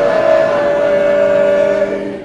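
Male barbershop quartet singing a cappella, holding one long, loud chord in close harmony that ends just before the close.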